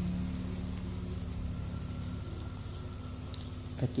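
Water at a rolling boil in a large aluminium pot of cut green beans, a steady bubbling, with a low steady hum beneath.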